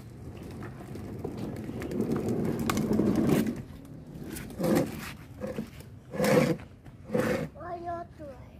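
Plastic wheels of a toddler's ride-on toy car rumbling as they roll over concrete, growing louder for the first three and a half seconds. Then three short bursts of a young child's voice.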